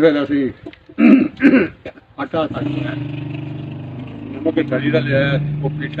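A motor vehicle's engine running steadily, coming in about two seconds in and rising slightly in pitch near the end, under a man's voice.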